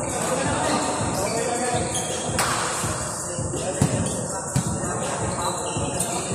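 Basketballs bouncing on a gym court floor, thumps at irregular intervals with two louder ones around four seconds in, under people's voices chattering in a large hall.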